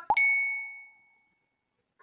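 A single chime-like ding sound effect, struck once and ringing out for about a second and a half, cueing the answer to a quiz question.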